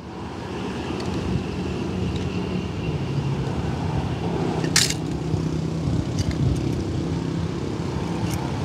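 Steady low outdoor rumble of background noise, with one sharp click about five seconds in and a few faint ticks after it.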